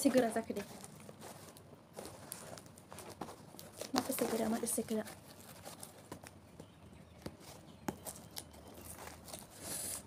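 Fingers picking at the taped end of a paper parcel, making scattered small clicks and crackles of paper and tape. A brief voice is heard about four seconds in.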